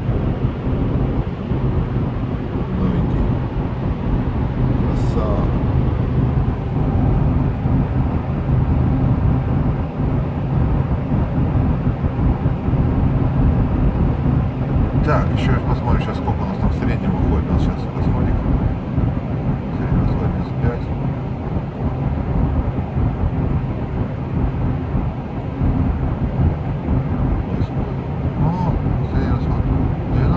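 Cabin noise of a Toyota Land Cruiser Prado 150 at highway speed: the steady drone of its 2.8-litre turbodiesel at about 2000 rpm under tyre and wind noise. A few light clicks come about halfway through.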